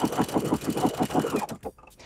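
Domestic electric sewing machine stitching a stretch (lightning bolt) stitch through knit fabric: a fast, even clatter of needle strokes over a faint motor whine, which stops about one and a half seconds in.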